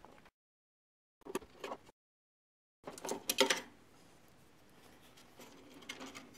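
Faint, brief clicks and rustles of a hand handling wiring and parts inside an Atwood RV furnace, twice broken by dead silence.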